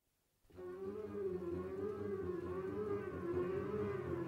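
A wind band playing the opening bars of a burlesque. A soft, winding chromatic figure wavers up and down over a low held bass. It starts about half a second in and grows louder.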